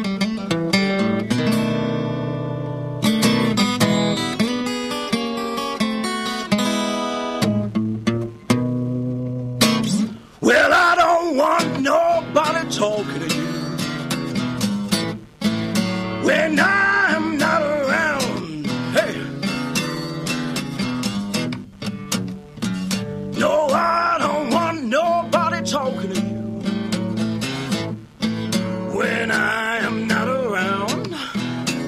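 Solo acoustic guitar playing a blues song, strummed chords for the opening, with a man's singing voice joining over the guitar about ten seconds in.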